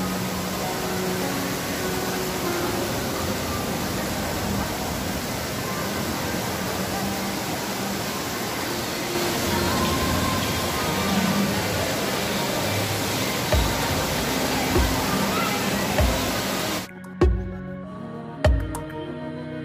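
Background music with a slow, regular bass beat under a steady, loud rushing noise of outdoor ambience. The rushing noise cuts off abruptly about 17 seconds in, leaving the music.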